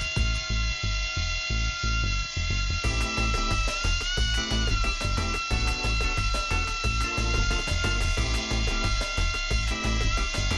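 Background music with a steady beat over the high whine of the Micro Fly's tiny electric motor and propeller as it hovers. The whine wavers in pitch and rises briefly about four seconds in.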